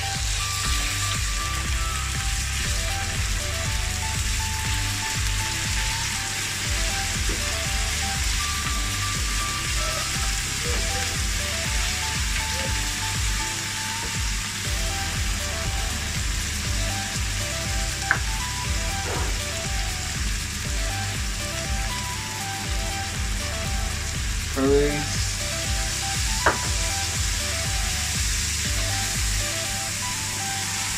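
Sliced chicken sizzling steadily as it fries in hot oil in a frying pan, turned now and then with a wooden spoon. Two sharp clicks stand out, one past the middle and one near the end.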